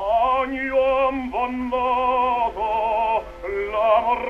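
Operatic singing from a 1912 acoustic Victor 78 rpm disc: one voice holding notes with a wide vibrato, in short phrases with brief breaks about a second and a third in. The sound is narrow and muffled, with no highs, as acoustic recordings are.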